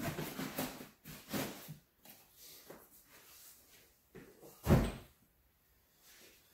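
Knocks and rustles of a coffee can being pushed into a canvas tool bag and the bag being handled, with one loud thump about three quarters of the way through.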